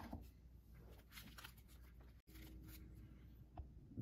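Near silence, with a few faint rustles and taps of trading cards being lifted out of a clear plastic storage bin.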